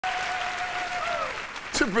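Audience applauding. Over the clapping a long held tone glides down and fades about a second in.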